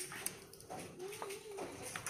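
A few light knocks as a terracotta bowl of rabbit pellets is handled and set down on a slatted cage floor, with a faint wavering whine behind them.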